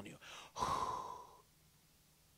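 A man blowing out one long breath close into a handheld microphone, with a faint whistle-like tone in it, trailing off after about a second.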